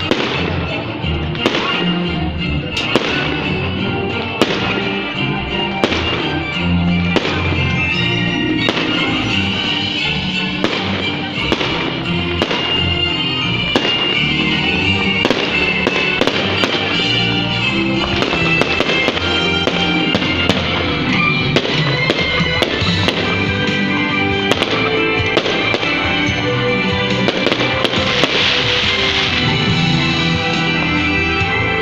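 Aerial fireworks bursting, with many irregular bangs and crackles, over loud music played along with the display.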